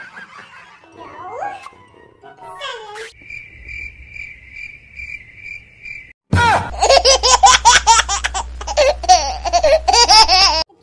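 A cricket chirping sound effect, a steady high pulsing of about two to three chirps a second, runs for about three seconds after some faint voice sounds. It then gives way to loud laughter over a low steady hum for the last four seconds.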